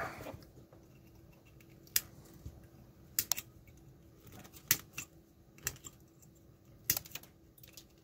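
Flush cutters snipping excess component leads off the back of a soldered circuit board: about half a dozen sharp snips, irregularly spaced.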